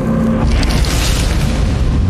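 A deep boom and rush of flame as a burning chip pan flares up, starting about half a second in, over a low held music drone.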